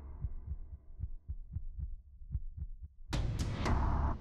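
Heartbeat sound effect in the soundtrack: soft, low thuds in quick even pairs, about four a second, then a loud burst about three seconds in that leads into drum-heavy music.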